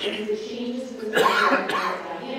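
A woman speaking at a lectern, with a cough about a second in.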